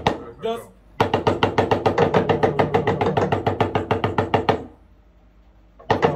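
Talking drum struck with a stick in a fast, even run of same-pitched strokes, about eight a second, lasting nearly four seconds and then stopping. This is the unbroken 'do do do' run being drilled in the lesson.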